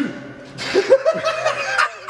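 Men laughing close to the microphone, starting about half a second in.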